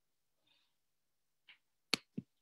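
Near silence broken by a faint click about halfway and a sharp computer-mouse click near the end.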